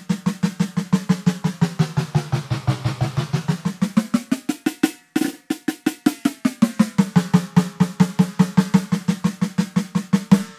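Roland TD-17 drum module's electronic snare sound hit in a fast, even roll of about five strokes a second while its head tuning is swept: the pitch of the drum climbs over the first few seconds, cuts out briefly near the middle, then sinks back down to its starting tuning.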